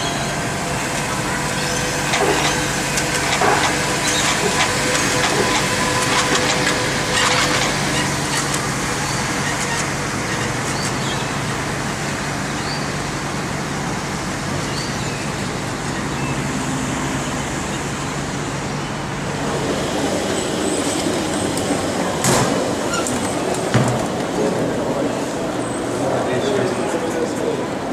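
A monorail train runs on its elevated beam amid city traffic noise, with a steady low hum. About twenty seconds in the hum stops and the sound changes to an indoor hall with voices and a couple of sharp knocks.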